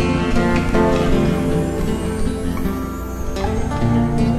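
Instrumental music on a nylon-string acoustic guitar: a run of plucked notes over a steady low backing.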